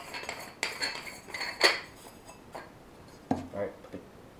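Handling clicks and clinks from a digital rifle scope as its eyecup is pulled off and set down on the table: a few sharp knocks, the loudest about a second and a half in.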